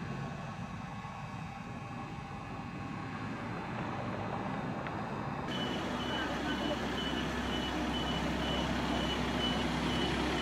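Quiet low background hum, then after a cut about halfway through, an ambulance's engine idling with a short high beep repeating about twice a second.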